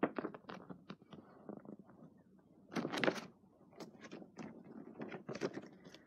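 Paper concert tickets being handled and shuffled: a run of soft rustles and clicks, loudest about three seconds in.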